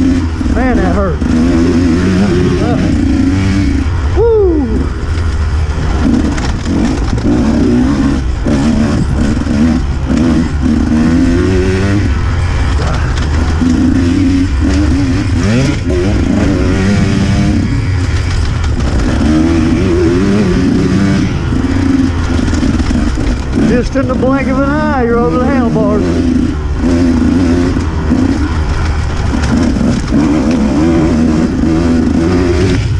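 Dirt bike engine at race pace, revving up and dropping back in repeated surges as the throttle is worked through the trail, with a few sharper climbs in pitch. A steady low rumble of wind lies on the on-board camera's microphone.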